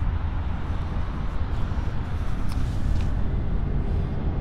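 A steady low rumble of outdoor background noise with no distinct events.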